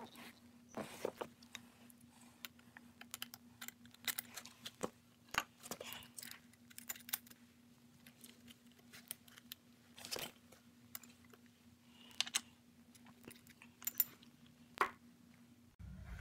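Scattered small metallic clicks and handling noises: hands working on the steel top mount of a Mercedes GL350 front air strut, fitting nuts onto its studs and setting a wrench on them.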